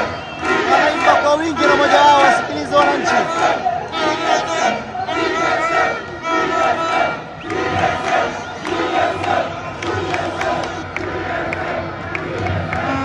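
A crowd of football supporters chanting and cheering together in the stands, many voices singing in repeated rhythmic phrases.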